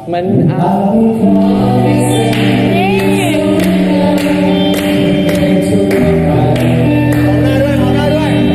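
Several voices singing a slow, sentimental song together in long held notes, over an electric guitar being strummed.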